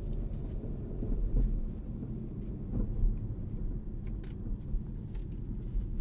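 Steady low rumble of road and engine noise inside a moving car's cabin, with a few faint clicks.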